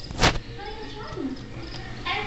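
A single short knock or scrape about a quarter second in, then a faint low background: handling noise as a hand reaches into a leopard gecko terrarium.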